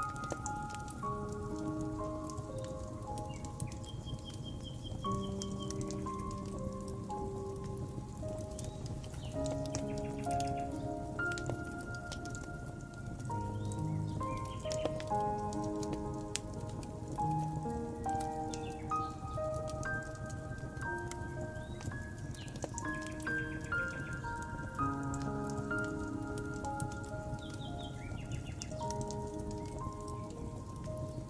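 Soft piano music playing slowly over a fire crackling with many small pops and snaps, with a few short bird chirps now and then.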